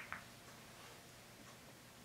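A single sharp click of pool balls knocking together just after the start, then near silence with a couple of faint ticks while the struck ball rolls on the cloth.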